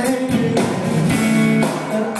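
Live rock band playing: electric guitar and drums, with a singing voice.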